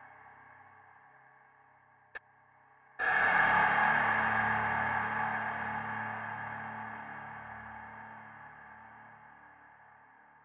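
Dark ambient synth music: a faint fading tone, a short click about two seconds in, then a single deep gong-like strike about a second later that rings and slowly dies away.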